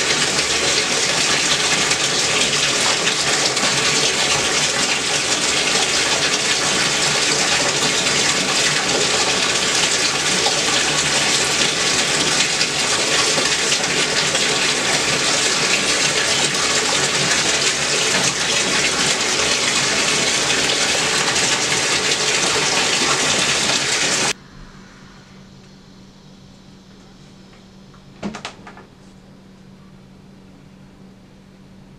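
Shower spray running as a steady, loud hiss of water, which cuts off abruptly about 24 seconds in. After it only a faint steady hum is left, with one short sound a few seconds later.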